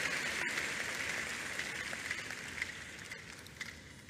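A congregation's applause in a large hall, dying away steadily to quiet.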